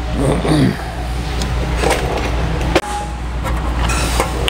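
A few light hammer taps on a sheet-metal fender-flare flange set over the finger of a box and pan brake, tipping the edge over a little at a time. The sheet is shifted between taps, and a steady low hum runs underneath.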